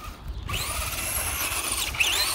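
Traxxas Rustler radio-controlled truck's electric motor and gears whining at high pitch, a steady whine that picks up about half a second in as the truck drives.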